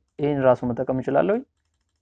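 A man's voice speaking one short phrase, about a second and a half long, then a pause.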